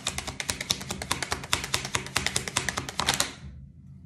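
A deck of tarot cards being shuffled by hand, a rapid run of card clicks that stops a little over three seconds in.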